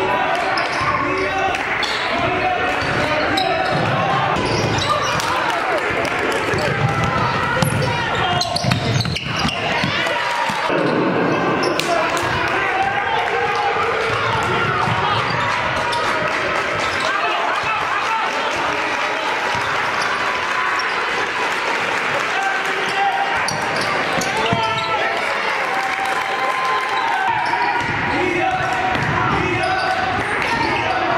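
Live basketball game sound in a gym: a ball dribbling on the hardwood floor, sneakers squeaking, and players, coaches and spectators shouting and talking.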